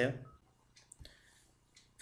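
A single computer mouse click about a second in, clicking the save button, after the last spoken word trails off.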